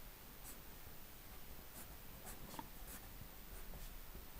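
Pencil lead scratching on paper in a handful of short, straight strokes, faint against room tone.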